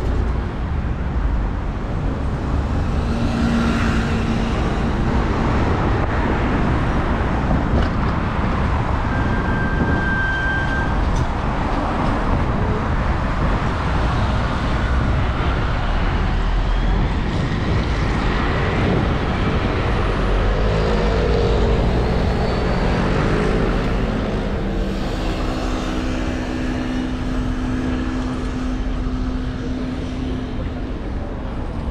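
Road traffic at a busy city crossing: cars and double-decker buses passing, a steady rumble of engines and tyres. A brief high tone sounds about ten seconds in, and a low steady engine hum comes through in the last few seconds.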